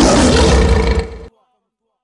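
Lion roar sound effect, loud and rough, fading about a second in and cutting off suddenly, followed by silence.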